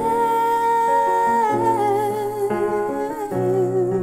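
A woman's voice holds a long wordless note over sustained piano chords played on a Korg keyboard. The note is steady at first, then drops lower and wavers. The chords change about every second.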